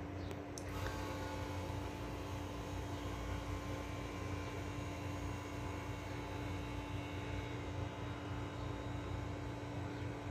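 A steady low electrical hum over quiet room tone, with a few faint clicks just under a second in.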